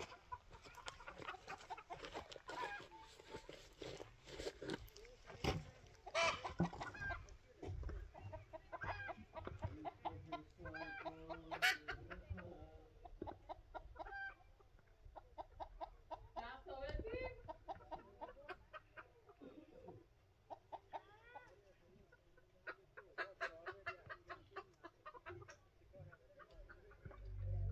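Chickens clucking, short calls coming on and off, with a quick run of clucks near the end.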